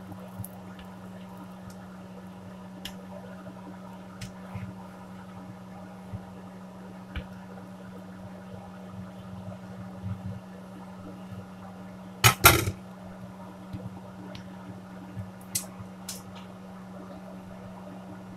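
Steady low hum in a kitchen, with a few light clicks and a sharp double clatter about twelve seconds in.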